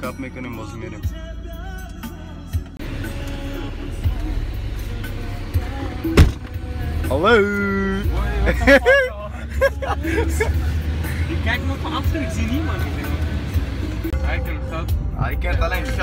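Car interior while driving: a steady low engine and road rumble that grows stronger about halfway through, under music and voices, with one sharp click about six seconds in.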